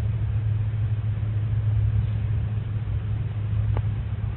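Steady low background hum with no speech, and a faint short click near the end.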